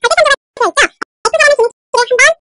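Speech only: a voice narrating in short phrases, with the gaps between them cut to silence.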